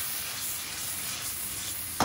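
Tomato pieces, garlic cloves and basil leaves sizzling in hot olive oil in a pan, a steady hiss.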